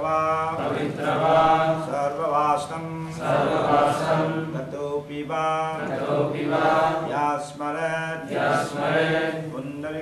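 Sanskrit mantras chanted in a steady, rhythmic recitation, phrase after phrase with short breaks between them, as part of a fire-sacrifice initiation rite.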